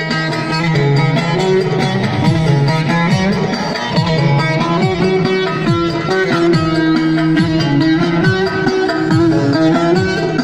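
Live Turkish folk music, instrumental with no singing: plucked long-necked lutes such as the bağlama lead over an electronic keyboard (org) with a steady drum beat.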